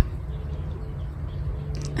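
A low, steady background rumble with a faint hum over it, and no distinct event.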